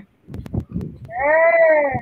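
A child's voice answering with the sound of the letter R: one drawn-out "rrr" about a second long that starts about a second in, its pitch rising slightly and then falling, preceded by a few faint clicks.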